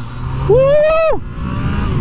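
Yamaha MT-09's 847 cc inline-three engine pulling hard under acceleration from a stop, heard from the rider's seat, with a long whoop from the rider in the middle.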